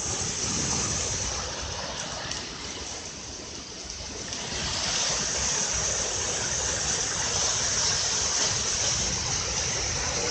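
Floodwater of a river in spate rushing down a stone-stepped waterfall, a steady rush of churning water that eases slightly about three seconds in and swells again from about five seconds.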